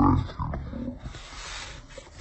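A man's voice, loud and rough in the first second, then a long breathy hiss in the second half.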